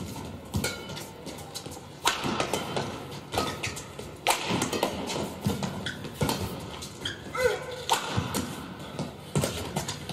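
Badminton rally: rackets strike the shuttlecock sharply about once a second, and shoes squeak on the court surface, most clearly a little after seven seconds.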